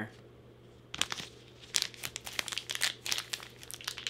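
A small sealed white blind-bag packet crinkling in the hands as it is twisted and tugged at its tear notch, a rapid irregular crackle starting about a second in; the packet is hard to tear open.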